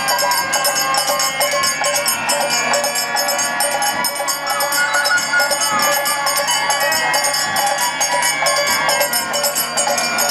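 Bamboo flute (bashi) playing a kirtan melody over metal percussion jingling in a steady beat.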